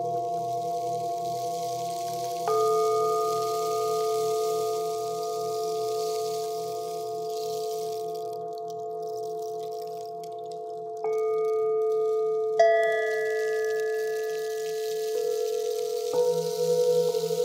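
Tibetan singing bowls ringing in layered, sustained tones over a low pulsing hum. New notes enter about two and a half seconds in and again near eleven seconds, and a bowl is struck sharply with a wooden striker about twelve and a half seconds in, its ring slowly fading.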